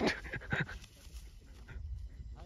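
Panting: a few short, breathy puffs in the first second, the first the loudest, then only a low rumble.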